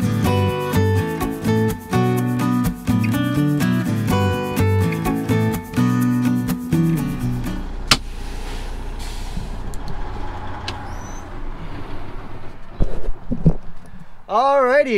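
Background guitar music for about the first seven and a half seconds. Then, inside a semi truck's cab, a sharp click and a steady hiss of air as the yellow parking-brake knob on the dash is worked, with the engine's low rumble underneath. A few knocks come near the end.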